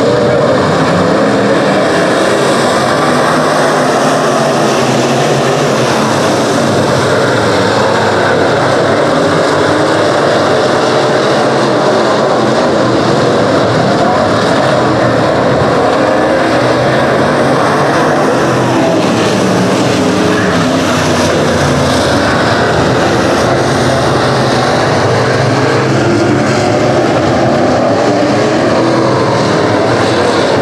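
A pack of B-Modified dirt-track race cars racing, several V8 engines running at once in a loud, continuous layered drone that wavers up and down in pitch as the cars lap the track.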